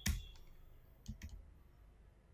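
Computer keyboard keystrokes deleting text: a sharp click at the start, then two quick clicks about a second in.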